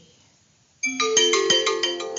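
A phone ringtone goes off suddenly about a second in: a quick run of bright, tuned notes played in a repeating melody.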